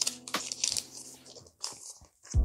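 Pokémon trading cards being handled and slid against one another in the hand: a run of short papery rustles and crinkles, with a brief lull near the end.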